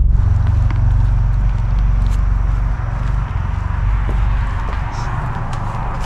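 Subaru BRZ's flat-four engine running at low speed under steady road and cabin noise as the car pulls over to the roadside, its low rumble easing about halfway through.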